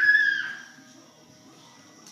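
A toddler's short, high-pitched squeal at the very start, fading within about half a second, over faint background music.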